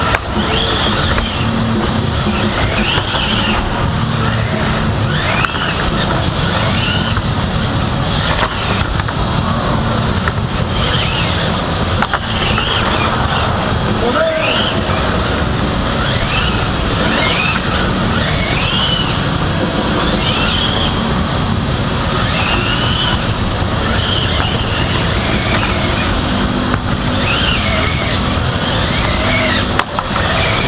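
Small combat robots' electric drive motors whining, the pitch sweeping up and down every second or two as the robots speed up, turn and stop, over a steady rumble and crowd chatter in a large hall.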